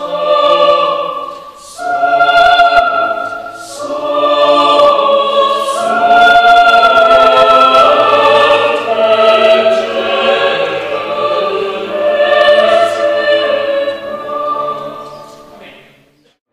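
Mixed choir of men's and women's voices singing sustained chords in phrases, with brief breaths between them, fading out near the end.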